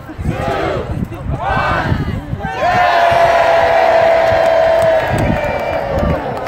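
Voices calling out across an outdoor crowd, then one long, drawn-out shout lasting about two and a half seconds.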